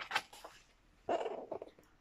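Paper pages of a picture book rustling as they are turned, a brief crackle right at the start, followed about a second in by a woman's voice beginning to read.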